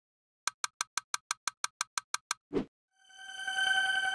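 Animated intro sound effects: a run of twelve quick, sharp clicks at about six a second, then a brief rising swish, then a sustained chime-like synth tone swelling in.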